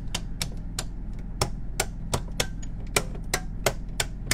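A quick, uneven run of sharp clicks, several a second, as the toggles of the circuit breakers in an RV's 110-volt power distribution panel are pushed one after another to check that each is set.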